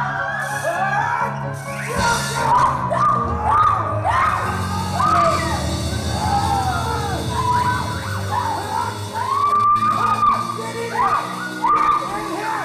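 Live band music from keyboard and drums: a lead line that swoops up and down in short, repeated arcs over a steady bass.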